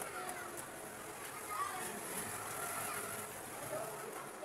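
Faint, indistinct voices in the background, with no words that can be made out.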